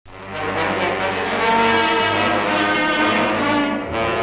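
Newsreel title music: held brass-band or orchestral chords that swell in at the start.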